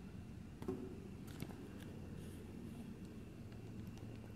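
Quiet room tone with a faint steady low hum, broken by a few soft clicks about half a second and a second and a half in.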